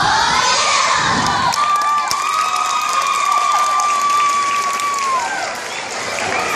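A crowd of children cheering and shouting, with one voice holding a long high cry for about three and a half seconds.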